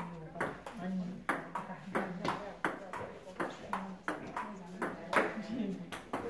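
Table-tennis rally: the ball clicking sharply off the paddles and table in a steady back-and-forth rhythm, about three hits a second.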